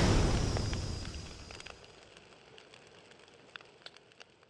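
A sound-effect explosion boom dies away over about two seconds, leaving faint scattered crackles.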